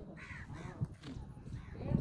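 A crow cawing, two calls in the first half second, and a dull thump near the end as a smartphone is set down on the ground.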